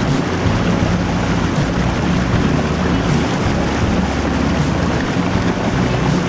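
Boat's motor running steadily under way, with water rushing along the hull and wind on the microphone.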